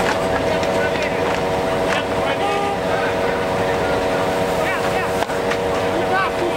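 A motor running steadily: a hum of several held tones over a broad rushing noise, with scattered faint voices. A short click about five seconds in.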